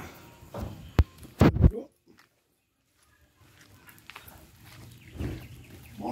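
A few sharp knocks and bumps in the first two seconds, then about a second of silence. After that come faint irregular footsteps in flip-flops on dirt and gravel.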